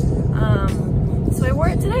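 Steady low road rumble inside a moving car's cabin, under a woman talking.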